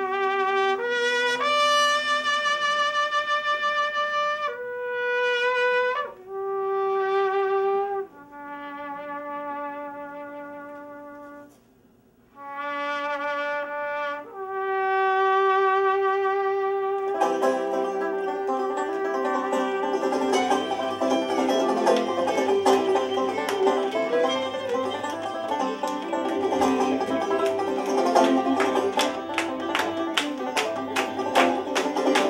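A trumpet plays a slow, somber solo melody in long held notes with short pauses between them. About halfway through, a string band with banjo and fiddle comes in with quick plucked strumming and the tune picks up.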